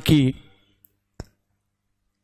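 A man's spoken prayer word ends and a pause follows, near silent but for one short, sharp click a little over a second in.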